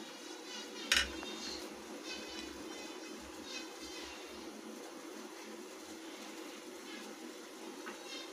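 Metal idli-stand mould plates handled while oil is rubbed into their cups by hand, with one sharp metallic clink about a second in and faint rubbing after it.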